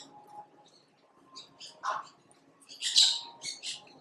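Birds chirping: a series of short, high calls, several in quick succession, loudest about three seconds in.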